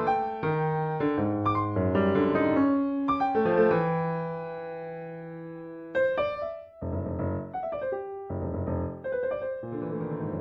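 Solo piano prelude played on a software (VST) piano: notes and chords, with one chord held and dying away in the middle before the playing picks up again about six seconds in.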